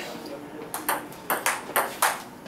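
Table tennis rally: the celluloid ball clicking sharply off the paddles and the table top, about six quick clicks in rough pairs starting about a third of the way in.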